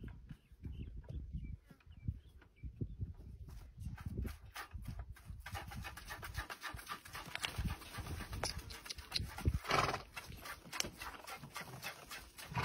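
A mare being hand-milked into a plastic bucket: a quick, uneven run of short squirts and rustles, with one louder burst of noise late on.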